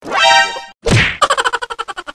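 Stainless steel bowl tipped off a table: a ringing metal clang as it flips and spills its water, a short whooshing knock as it lands, then a quick metallic rattle that fades as the bowl spins down and settles on the ground.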